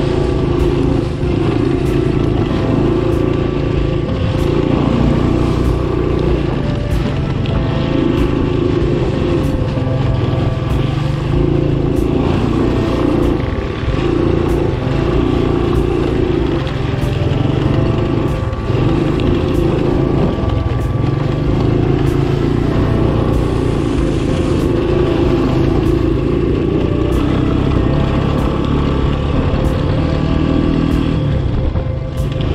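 1985 Honda ATC 200M three-wheeler's single-cylinder four-stroke engine running under way, its revs rising and falling a little as it is ridden.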